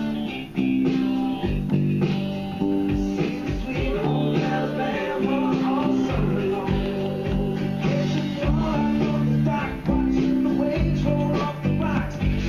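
Electric bass guitar played fingerstyle, running a repeating line of held low notes, with fuller music playing behind it.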